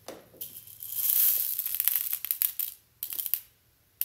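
Dried whole green moong beans rustling and rattling as a hand scoops them in a glass bowl and scatters them: a dense run of small clicks for about two seconds, then a shorter burst about three seconds in.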